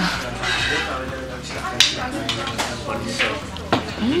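Forks and cutlery clicking on plates, a few sharp clicks with the loudest about two seconds in, over low voices and restaurant chatter.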